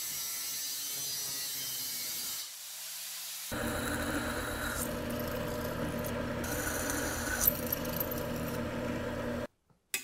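Angle grinder cutting through a steel bar for the first couple of seconds. After a short quieter gap, a bench drill press runs and bores holes in a thin metal strip, with the bit biting in with a harsher, higher sound a few times. The sound stops abruptly shortly before the end.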